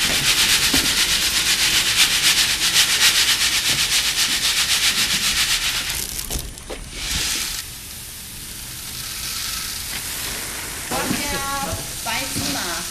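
Freshly fried puffed rice being shaken back and forth in a large wooden-framed sieve tray, the grains rattling and hissing across the screen in a fast, even rhythm. The shaking stops about six seconds in, leaving a fainter hiss, and a voice starts near the end.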